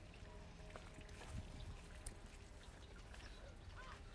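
Near silence: faint background hum with a few soft clicks.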